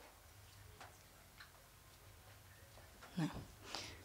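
Faint clicks from a laptop being operated, then a short louder thump followed by a rustle near the end.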